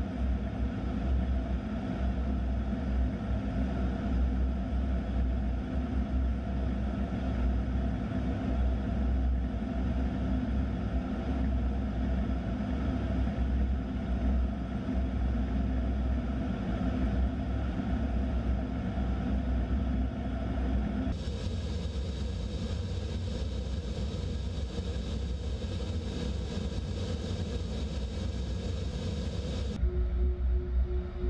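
Steady in-cockpit drone of an A-10 Thunderbolt II in flight: its twin General Electric TF34 turbofan engines and the airflow over the canopy, heard from inside the cockpit. About two-thirds of the way through, the drone turns thinner and hissier.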